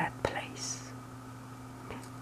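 A pause in soft, whispery speech: a steady low hum underneath, one sharp click about a quarter of a second in, and a brief faint hiss shortly after.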